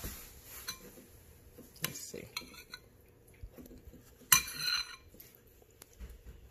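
Metal spoon clinking against a ceramic bowl of stew a few times, with short ringing after the strikes and the sharpest clink a little after four seconds.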